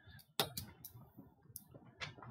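A few sharp clicks and light taps, the loudest about half a second in, as a stylus pen is picked up and handled against a tablet.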